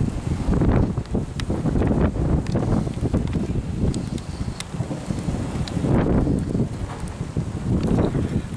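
Gusty wind on the microphone: a low rushing noise that rises and falls in gusts, with a few faint clicks.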